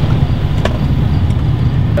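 Steady low rumble of an idling vehicle engine, with a single short click about two-thirds of a second in.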